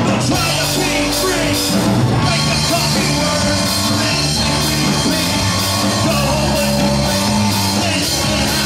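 Live rock band playing loud: electric guitar, bass guitar and drum kit with a steady beat, and a vocalist singing into a microphone.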